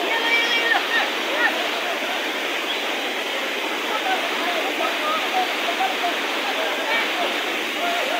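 Steady rush of a mountain stream pouring over rocks close by, with a crowd's voices talking faintly over it.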